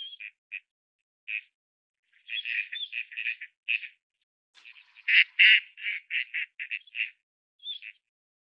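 Bird calls: short, sharp chattering notes, a few of them rising, given singly at first and then in two quick-fire bouts, the second and loudest about five seconds in.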